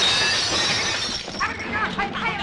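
A loud crash of dishes and glassware as a room-service cart is rammed, the ringing jangle fading over about a second, followed near the end by a brief shout.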